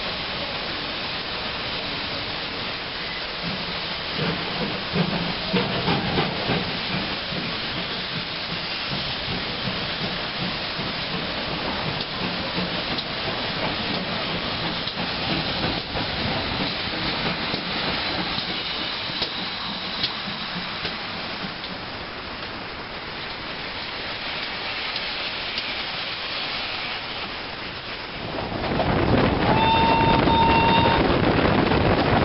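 Steam locomotive hissing steam, with a run of loud exhaust beats a few seconds in and steady steam and rail noise after. Near the end a steam whistle sounds over wind and track noise.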